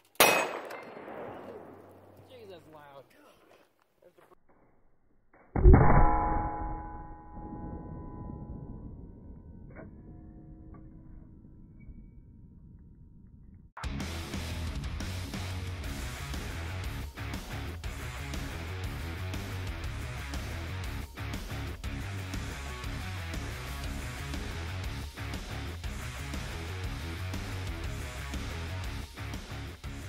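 A .50 BMG spotter-tracer cartridge set off by a pulled string: a sharp, loud bang as it fires into a steel plate, echoing away. About five seconds later comes a second loud bang with a metallic clang that rings on. From about 14 seconds, background music plays.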